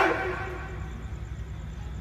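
A pause between spoken phrases: the last word's echo through the public-address system fades over the first half second, leaving a low, steady background hum.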